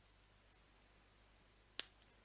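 A single sharp click near the end, over faint, steady room tone.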